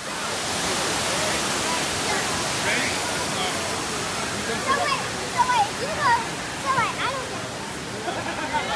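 Steady rush of water at a crowded swimming pool, with people's voices and shouts rising over it from about halfway.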